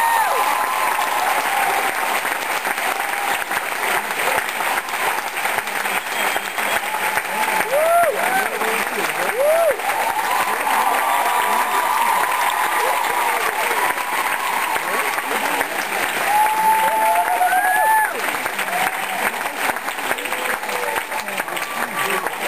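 A concert audience applauding steadily as a performer is welcomed on stage, with scattered voices calling out in short rising-and-falling whoops above the clapping.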